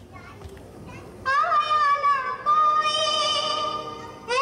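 A woman's high singing voice comes in about a second in and holds one long, wavering note that fades out just before the end.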